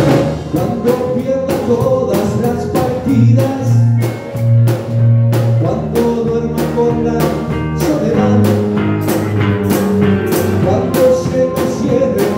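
Live band playing an upbeat song: a drum kit keeping a steady beat under electric guitar and keyboard.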